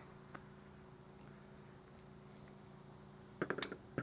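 Faint steady hum, then near the end a quick cluster of small sharp clicks and snaps as cast lead fishing weights are broken off their sprue with pliers.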